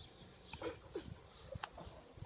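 Faint, short, irregular breaths or snuffles from a Staffordshire bull terrier lying with its tongue out, a few of them spaced about half a second apart.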